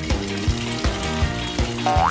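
Background music with a steady beat, about three beats every second, and a short rising sound near the end.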